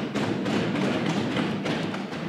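Members of the House thumping their desks, a dense steady patter of many dull knocks on wood with some voices mixed in.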